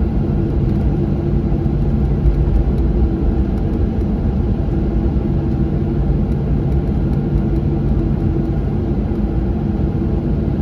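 Cabin noise of a Boeing 737-900 taxiing: its CFM56-7B engines running at idle, with a steady hum over a continuous low rumble from the rolling airframe.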